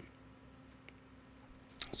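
Near silence: faint room tone with a low steady hum and one faint tick about a second in, then a man's voice starts near the end.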